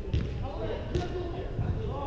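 A soccer ball being kicked on indoor artificial turf: two sharp kicks about a second apart that echo around the large hall, with players' voices calling across the pitch.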